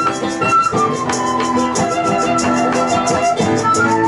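A live folk band playing: a flute carries the melody in long held notes that step down in pitch, over strummed acoustic guitars, violin and a steady drum beat.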